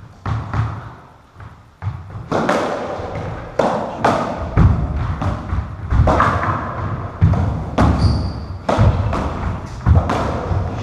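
Racketball rally in a squash court: a string of sharp, echoing thuds as the ball is struck by the rackets and hits the walls and floor, irregular at roughly one to two a second, with the players' footsteps on the wooden floor. A brief high squeak comes about eight seconds in.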